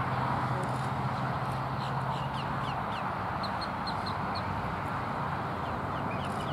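A scattering of short, high, falling bird chirps over a steady outdoor background hiss, with a low steady hum that stops about halfway through.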